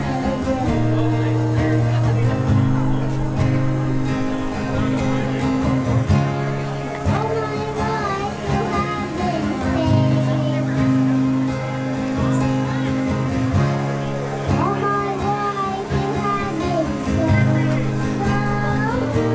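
Live acoustic guitar strumming chords through a PA, with a voice singing a worship song over it that comes through more clearly about halfway in.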